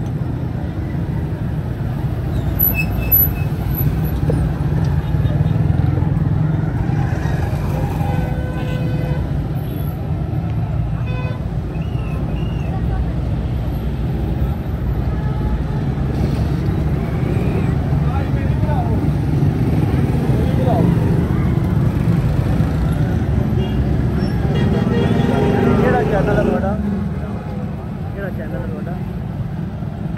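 Street traffic running steadily, with vehicle horns tooting now and then and people's voices in the street.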